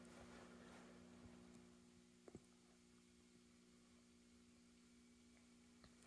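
Near silence: room tone with a faint steady hum and one faint tick a little over two seconds in.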